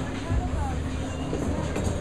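Candlepin balls rolling down wooden bowling lanes, a steady low rumble, with people talking in the background.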